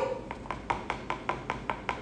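Quick, even light taps, about five a second: a fork holding a chocolate-dipped cone knocked against the rim of a bowl to shake off excess melted chocolate.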